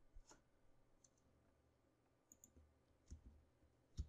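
Near silence with a handful of faint, short clicks from a computer mouse, spread across the few seconds as the code is scrolled and the cursor placed.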